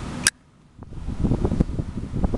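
A single sharp click about a quarter second in, then a short lull, followed by low rustling and light knocking as a hand turns a chrome Zippo lighter close to the microphone.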